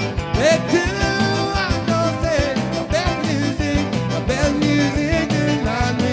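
Live Cajun dance band playing an up-tempo number with a steady drum beat: diatonic button accordion, electric bass and electric guitar.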